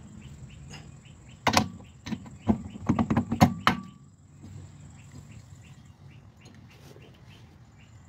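A quick run of sharp metal clicks and knocks lasting about two seconds, with a brief ring after the last one. The sound comes as a steel wheel hub is slid onto a car's rear stub axle inside the drum brake.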